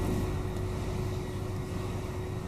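Room tone in a pause between spoken sentences: a steady low rumble with a faint, steady hum.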